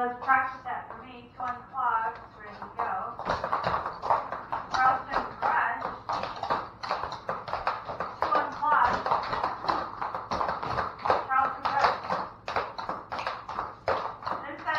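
Metal clogging taps on shoes clicking irregularly against a wooden floor as several dancers step and walk about, with women talking now and then.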